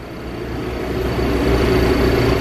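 An engine running with a steady rumble that grows louder over the first second or so, then holds.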